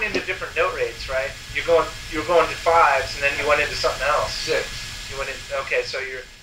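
A man talking on an old lo-fi lesson recording, with a steady low hum under the voice.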